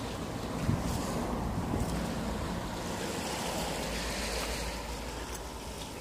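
Wind buffeting the microphone over the low, steady wash of a calm sea at the shore, with one light knock under a second in.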